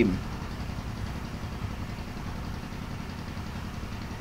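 Steady low background rumble, the end of a spoken word at the very start.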